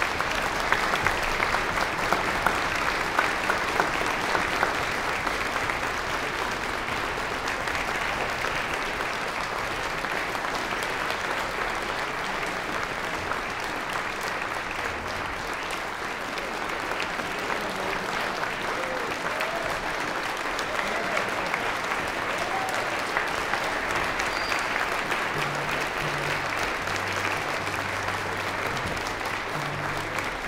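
Concert audience applauding, a dense, even clapping that keeps up at much the same level.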